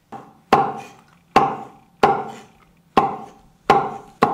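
Cleaver chopping braised beef intestine on a wooden cutting board: five sharp chops, a little under one a second, each with a brief metallic ring from the blade.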